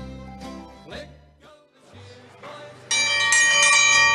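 Country-style music that stops about a second and a half in. About three seconds in, a bell starts ringing loudly, struck several times with a sustained ring.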